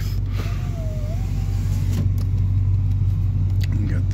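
The 2001 GMC Yukon's engine idles with a steady low hum heard inside the cabin. A power window motor whines briefly from about half a second in, falling slightly in pitch and then holding, and there are a couple of switch clicks.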